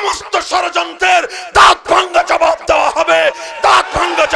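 A man shouting impassioned speech into a microphone, high-pitched and strained, in loud rapid bursts.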